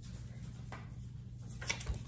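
Quiet room with a steady low hum and a few faint handling noises as a stitched fabric piece and paper templates are picked up. There is a soft low bump near the end.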